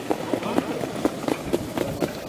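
Hoofbeats of harness-racing trotters on a sand track as horses pulling sulkies run past, with voices talking in the background.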